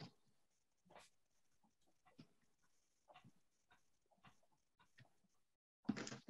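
Near silence on a video call, broken by a few faint short sounds about a second apart.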